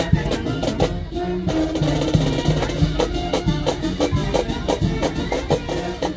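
Marching band playing a dance tune: brass with a steady, evenly spaced drum beat.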